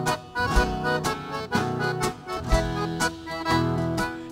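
Instrumental break in a gaúcho song: accordion carrying the melody over strummed acoustic guitars, with a low drum hit about every two seconds.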